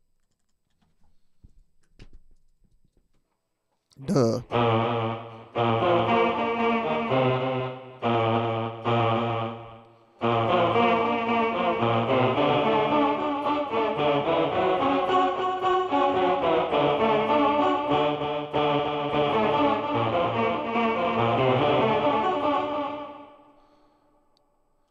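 Electric guitar played through an Electro-Harmonix Mel9 tape replay pedal and a Line 6 HX Stomp, its chords sounding as sustained, string-like Mellotron-style tones. The playing starts about four seconds in, breaks off briefly a few times, then runs on unbroken and fades out near the end.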